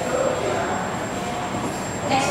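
Steady background noise of a room with a thin, high, steady whine and faint murmuring voices.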